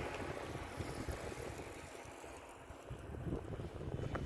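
Wind rumbling and buffeting on the microphone as a line of cyclists rides past on an asphalt road, with only a faint hiss from the passing bicycles.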